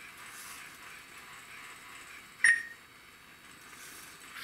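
A single short electronic beep a little past halfway through, over faint room hiss: the acknowledgment tone of a voice-controlled robot's speech system, signalling that it has picked up a spoken command and is listening.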